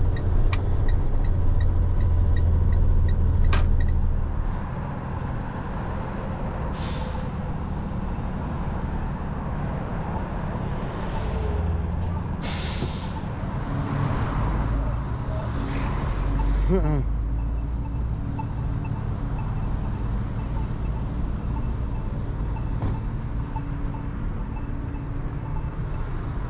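Heavy tow truck's engine running, with several sharp hisses of released air from its air brakes around the middle, then a low idle under street traffic.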